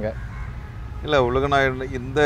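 Speech: a man talking from about a second in, over a steady low background rumble.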